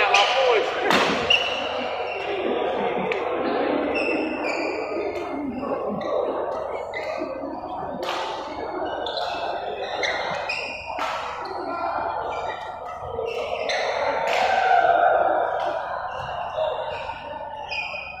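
Badminton doubles rally: sharp racket strikes on the shuttlecock every second or few, with players' shoes on the court floor and voices echoing in a large sports hall.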